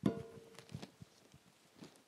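Faint handling sounds at a lectern while a Bible passage is looked up. A knock at the start is followed by a short ringing tone, then a few soft taps and rustles.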